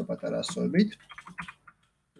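A voice speaking for about a second, then a few quick taps on a computer keyboard.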